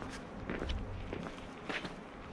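Footsteps of a person walking on a paved railway platform: several steps, each a short scuff or tap.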